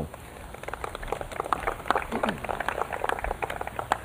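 Audience applauding: a patter of many hands clapping that builds a little after the start and carries on steadily.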